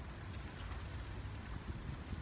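Low, steady wind rumble buffeting a phone's microphone, with a few faint ticks about half a second in.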